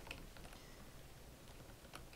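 Near silence: low room hum with a few faint computer keyboard clicks, one just after the start and one near the end.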